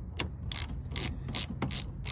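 13 mm Tribus ratcheting line wrench being swung back and forth on a brake line nut at an ABS module, its pawl clicking on each return stroke in a run of sharp clicks, about three a second.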